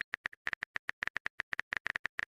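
Rapid, uneven run of short clicks, about nine a second: a keyboard typing sound effect.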